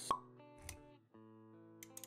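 Animated-intro sound effects over soft background music: a sharp pop just after the start, the loudest sound, then a short soft swish about halfway through, with held musical notes beneath.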